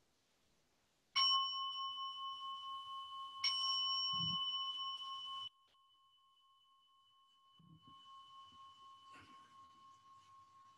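A meditation bell is struck twice, about two seconds apart, each strike ringing on in a few clear tones. The ringing cuts off suddenly after about five seconds, then is heard again faintly, marking the end of the sitting.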